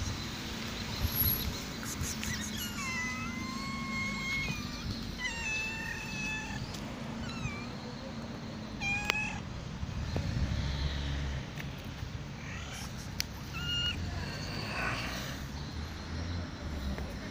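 Cat meowing repeatedly, about five meows: two long, drawn-out ones in the first several seconds, then a few shorter ones.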